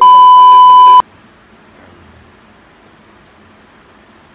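Test-card bleep sound effect: one loud, steady beep tone lasting about a second, cutting off abruptly, then faint room tone.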